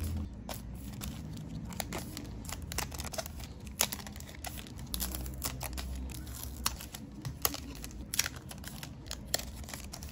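Thin OPP plastic photocard sleeves being peeled open and crinkling as the cards are pulled out of them, a steady run of irregular sharp crackles.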